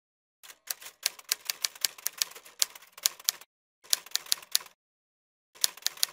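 Typewriter keys clacking in quick runs of strikes, about six a second, in three bursts separated by short silent gaps.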